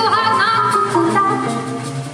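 Live jazz band: a woman's voice bends into a held note over acoustic guitar and a drum kit with cymbals, the singing easing off near the end.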